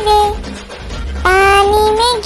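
Child's singing voice over a music backing in a Hindi nursery rhyme. The voice dips briefly, then holds a long note from just over a second in.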